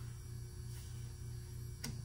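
Steady low electrical hum, with one faint click near the end.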